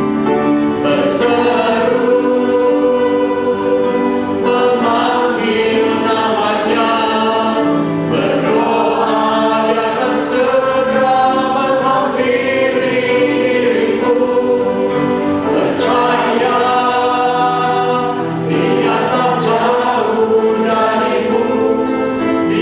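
An Indonesian worship hymn sung by a lead male voice with two backing singers, a woman and a man, in harmony, over piano, keyboard and guitar accompaniment, with long held notes.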